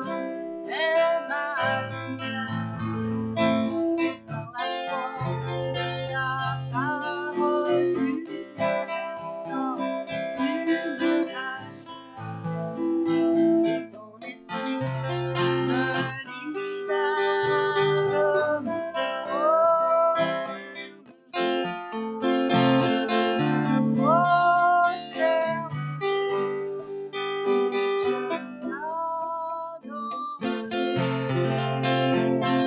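A woman singing a worship song in French while strumming an acoustic guitar, her voice dropping out briefly between phrases.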